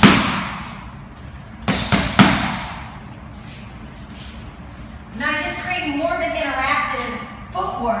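Boxing gloves smacking into focus mitts: one loud hit right at the start, then a quick pair of punches about half a second apart near the two-second mark, each echoing in the large room.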